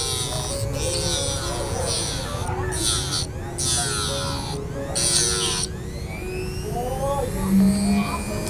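Handheld electric rotary tool with a cutting disc grinding through a metal ring stuck on a man's finger: a high whine whose pitch shifts as the disc bites, breaking off briefly several times and dying away about six seconds in. Background music plays underneath.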